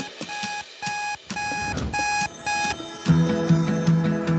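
Digital alarm clock beeping: a run of about five short beeps at one pitch, roughly two a second. Acoustic guitar music starts about three seconds in.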